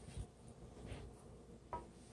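Nylon tongs handling meat in a skillet: a soft low thump about a quarter second in, then a sharper knock with a brief ring near the end, both faint.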